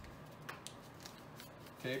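Quiet handling sounds: tape pulled off a weighted desktop tape dispenser and butcher paper handled around a wrapped salami, a soft thump and a few faint clicks and rustles.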